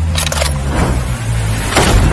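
Cinematic intro sound design: a deep bass rumble with a quick whoosh, building to a loud whoosh and sharp bullet-impact hit near the end.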